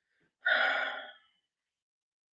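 A man's brief vocal sound, a single utterance without words, starting about half a second in and lasting under a second.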